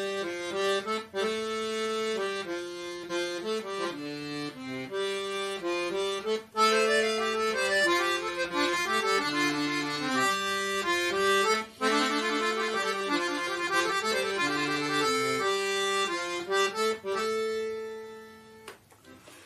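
Pigini free-bass accordion playing a cheez, a composed Hindustani classical melody, as a line of separate sustained reedy notes. From about six seconds in the sound turns louder and brighter, with more upper notes.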